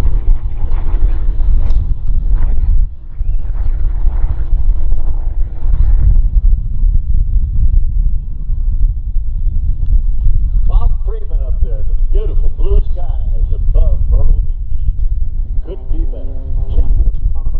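Wind buffeting the microphone, a heavy continuous rumble that largely covers the distant Extra 330SC aerobatic plane, whose engine drone shows faintly in the first few seconds. A voice talks over it in the second half.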